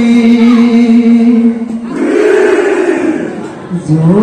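Male husori troupe singing one long held note together. About two seconds in it breaks into a loud group shout that swells and fades, and a new sung note starts near the end.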